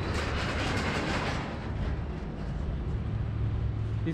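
Road traffic noise: a vehicle passing with a rushing sound that fades after about a second and a half, over a steady low engine rumble.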